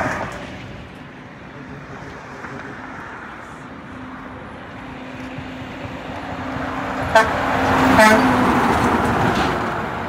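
A dump truck's engine grows louder as it approaches and passes. It sounds its horn twice: a short toot about seven seconds in, then a stronger blast a second later as it goes by.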